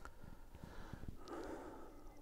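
A man sipping beer from a glass, with two soft breaths through the nose, about half a second and a second and a half in.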